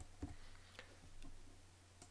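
Near silence: faint room tone with a steady low hum and a few faint clicks, one about a quarter second in and more near the middle.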